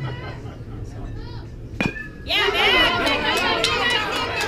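A metal baseball bat hits the ball with a single sharp, ringing ping a little under two seconds in. Spectators immediately break into loud cheering and shouting.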